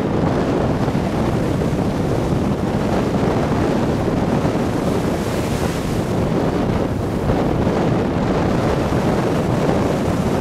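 Small ocean waves breaking and washing up a sandy beach, with wind buffeting the microphone in a steady low rumble. A louder hiss of surf wash comes about halfway through.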